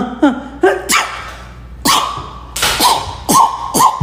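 Beatboxing: sharp mouth-made percussion hits, opening with a falling vocal glide. About halfway through, a held high tone enters with quick pitch blips on top of the beat, made with hands held at the mouth.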